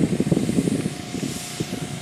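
Wind buffeting a microphone on a moving bicycle: a rough, fluttering rush that eases a little over the two seconds.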